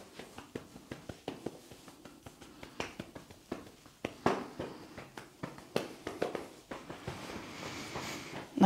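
Hands lightly tapping down a leg through soft trousers: a run of soft, irregular pats, several a second, with a few firmer ones midway.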